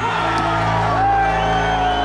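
Background music with a steady low drone, mixed with a crowd of men shouting and whooping; one long, slightly falling call is held through the second half.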